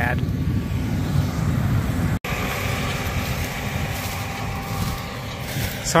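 Combine harvester running steadily as it works the corn field, with wind on the microphone; the sound cuts out for an instant just over two seconds in.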